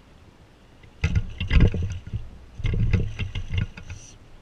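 A northern pike splashing and thrashing at the water's surface beside a small boat as it is released from a lip grip, in two bursts of splashing about a second apart.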